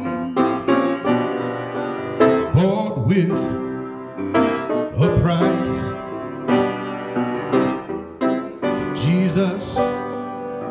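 A man singing a slow gospel song solo into a microphone, his voice sliding up and down between notes, over keyboard accompaniment.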